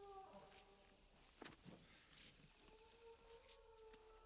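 Faint, long, low held calls of distant brachiosaurs, a film sound effect. One call fades just after the start and another begins near three seconds in, with a short rustle about a second and a half in.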